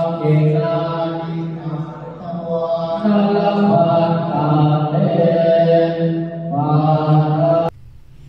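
Buddhist ritual chanting: phrases chanted on long held tones with a brief lull partway through. It breaks off abruptly near the end.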